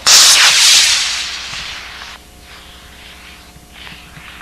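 A 40-inch model rocket's motor igniting and launching: a sudden, very loud hissing rush that fades over about two seconds as the rocket climbs away, then drops off abruptly.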